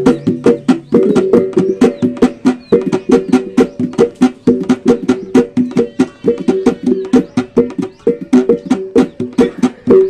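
Wanukaka tabbung, Sumbanese traditional percussion music: a fast, even run of sharp strikes over several ringing pitched tones. A deeper low tone drops out about a second in.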